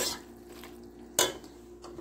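A slotted serving spoon knocks once, sharply, against a stainless steel pot of macaroni about a second in, with a lighter click near the end, over a faint steady hum.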